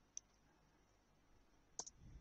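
Near silence broken by two short clicks at a computer, a faint one just after the start and a sharper one near the end.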